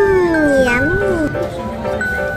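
A drawn-out hummed "mmm" in a woman's voice, sliding down then up then down again in pitch for about a second, over background music with steady held notes.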